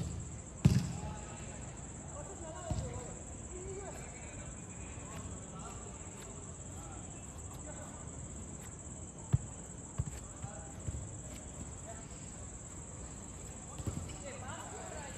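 A football being kicked on artificial turf: a sharp thud about a second in, then several more, one loud one past the middle. Faint distant shouts from the players come and go over a steady high whine.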